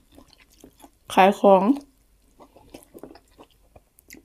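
A person chewing grilled pork, with faint small clicks from the mouth and a few spoken words about a second in.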